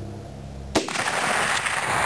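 A single shot from a Winchester Model 94 lever-action rifle in .30-30, firing a 110-grain FMJ load. A sharp crack comes about three-quarters of a second in, followed by a long echo that lingers.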